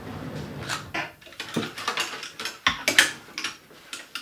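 A sliding wardrobe door rolls open with a low rumble. Then wire or wooden clothes hangers click and scrape along the rail as the hanging clothes are pushed aside, with the sharpest clack about three seconds in.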